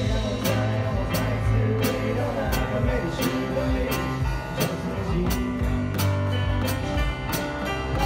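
Live band playing an instrumental passage of a pop song: a drum kit keeps a steady beat with a sharp hit about every two-thirds of a second under sustained keyboard chords.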